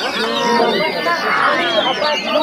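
Oriental magpie-robins (kacer) singing at a songbird contest, several birds overlapping in a dense stream of warbling, whistled phrases, mixed with drawn-out shouts from men in the crowd.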